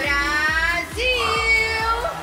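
A woman's voice holding two long, drawn-out notes into a stage microphone, the second held at a steady pitch, over backing music with a steady electronic beat.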